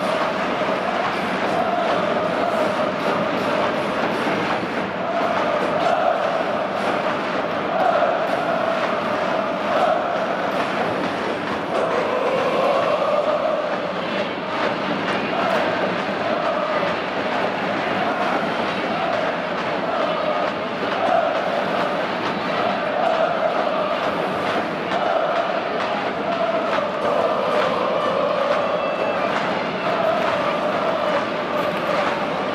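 Football supporters in the stands chanting in unison, a continuous sung chant rising and falling in pitch over the noise of a large crowd.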